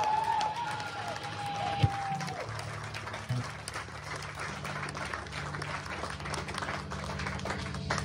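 A small club crowd yelling and cheering as a live rock song ends. The yelling dies away after about two seconds into chatter and scattered clapping, with a sharp thump near two seconds in and a low steady hum underneath.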